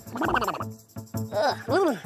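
A cartoon alien character's croaky, strained vocal noises: a short wavering cry near the start and two rising-then-falling groans in the second half, over background music.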